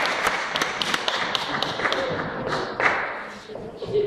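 Audience applauding, thinning out and dying away about three seconds in.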